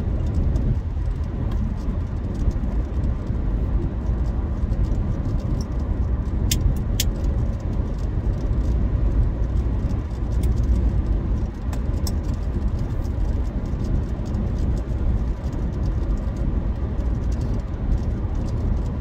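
Steady road and engine rumble inside the cabin of a car moving at highway speed, with a few faint clicks.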